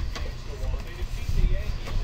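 Cardboard carton being handled as its cut flaps are opened, heard as low bumps and rumbling on the table, with the loudest bump about one and a half seconds in.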